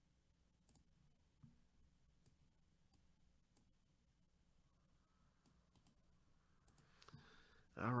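A few faint, scattered computer mouse clicks in near silence.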